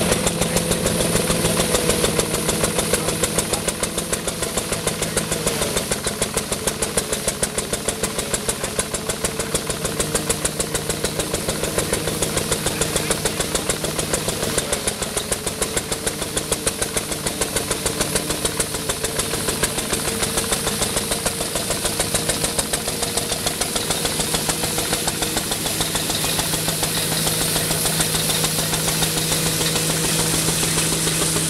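Single-cylinder Asaa stationary diesel engine running with a steady, even beat, powering a threshing machine as sheaves are fed in, with the machine's hum over it.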